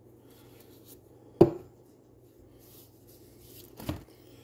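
Two sharp knocks, a loud one about a second and a half in and a softer one near the end, as the plastic super glue bottle is handled and set down on a wooden workbench, over a faint steady hum.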